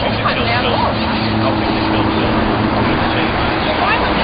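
Steady roar of road traffic with a low engine hum, under indistinct voices of people talking.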